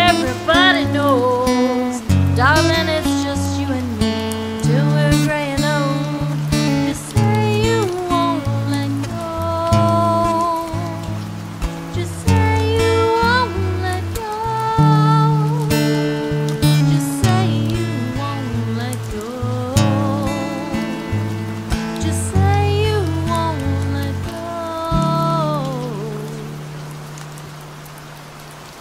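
Acoustic guitar playing a slow instrumental ending of single notes and chords, fading out over the last few seconds.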